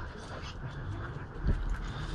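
A dog whimpering softly, broken by a dull thump about one and a half seconds in.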